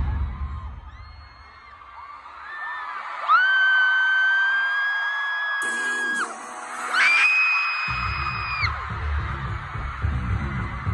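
Concert music with a heavy bass beat fades out, and fans scream in long, high-pitched screams. The loudest is close to the microphone and lasts about three seconds; a second, shorter one follows. The bass beat comes back in near the end.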